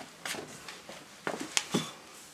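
A few light metallic clicks as an allen key and fingers handle an Oberon foot peg on its mount while it is set in position: one click early and a quick cluster of three in the second half.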